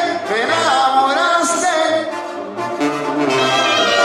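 Live banda sinaloense music: trumpets and trombones playing over sustained sousaphone bass notes and drums, with a male voice singing. The level dips briefly about halfway through.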